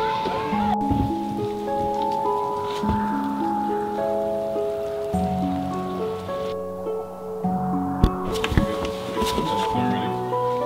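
Instrumental background music of slow, held notes stepping from one pitch to the next, with a few short knocks over it, the sharpest about eight seconds in.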